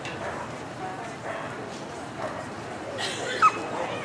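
A Samoyed gives a short, high yip with a rising pitch about three and a half seconds in, over ringside chatter.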